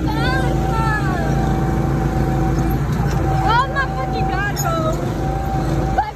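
Go-kart engine running steadily under the rider, a continuous low rumble and hum, with voices shouting and whooping over it near the start and again around the middle.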